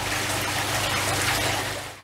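Water trickling and running steadily into an aquaponics fish tank, fading out near the end.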